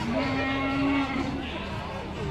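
A single held, pitched call lasting about a second, near the start, over a background of crowd chatter.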